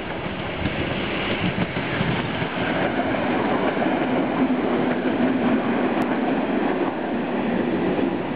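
EN57 electric multiple unit rolling into a station, its wheels and running gear running on the rails. The sound grows louder over the first few seconds as the train draws near, then stays loud.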